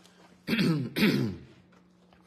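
A man clearing his throat, two short rasping bursts in quick succession.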